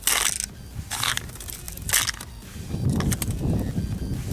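Latex condom slick with lube rubbing and stretching as a Glock 17 magazine is drawn out of the grip with the condom still over both: three short rustles about a second apart, then softer, lower handling noise.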